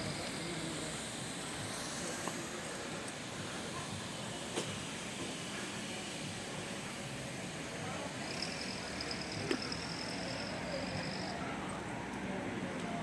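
Town street ambience: a steady background of traffic and faint distant voices, with a couple of light clicks and a thin high hiss for a few seconds near the end.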